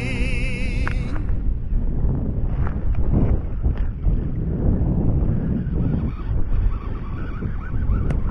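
Wind buffeting an action camera's microphone: a steady, low rumbling noise. A song with singing cuts off about a second in.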